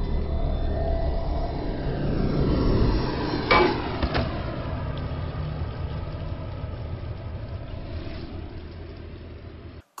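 Horror-film soundtrack: a low rumbling drone with faint gliding tones, broken by two sharp hits about half a second apart, about three and a half seconds in, after which the drone slowly fades.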